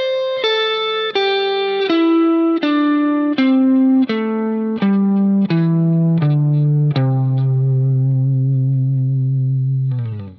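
Electric guitar (Fender Stratocaster-style) picking a pentatonic scale shape one note at a time, descending slowly and evenly with a new note about every 0.7 s. It ends on a low note held for about three seconds.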